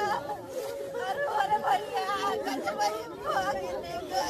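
Voices of a crowd of people talking and calling out, with one long, drawn-out wavering voice held under the broken speech.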